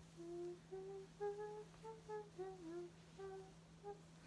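A young woman softly humming a tune, a run of about a dozen short held notes, with a faint steady low tone underneath.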